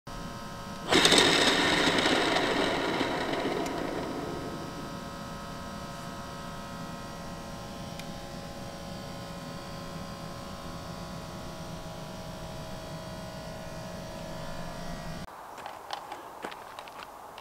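A sudden loud hit about a second in, fading over a few seconds into a steady drone of several held tones that cuts off abruptly just before the end.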